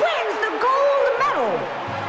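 A cartoon girl's voice cheering in drawn-out wordless whoops, the pitch swooping up and down and ending in a long falling glide about one and a half seconds in. Background music plays underneath.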